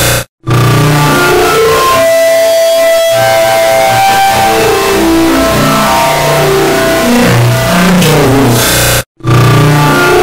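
The same short lecture-intro clip overlaid on itself millions of times, smeared into a loud, distorted, music-like mass with a few held tones over a hiss. It cuts out briefly just after the start and again about a second before the end, each time coming back as a new, denser layer.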